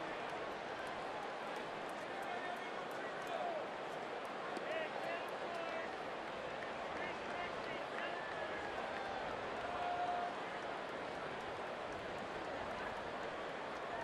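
Stadium crowd chatter at a steady level, with faint individual voices calling out now and then.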